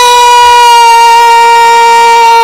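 A woman's singing voice holding one long, steady high note, loud and close on the microphone.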